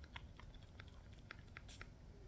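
Near silence: room tone with a few faint, small clicks scattered through it.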